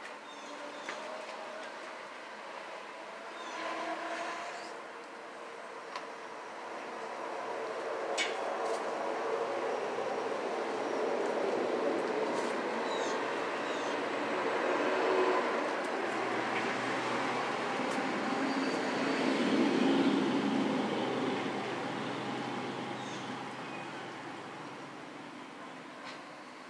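A vehicle passing outside, its noise growing louder over several seconds, holding, then fading away toward the end.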